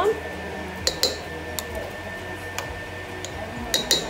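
Metal spoon clinking against a stainless steel bowl and a glass jar while scooping tomato paste: a few single clinks, then a quick run of clinks near the end.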